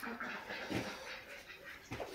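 Faint, brief animal calls in the background, one a little before halfway and one near the end.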